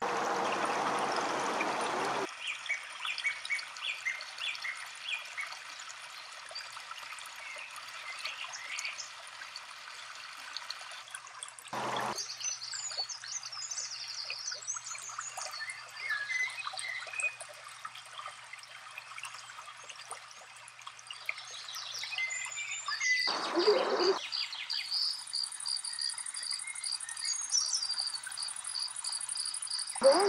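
Small stream trickling over rocks, with songbirds chirping over the steady water sound; near the end one bird repeats a short high note about three times a second. Brief louder rushes of noise come at the start and twice more.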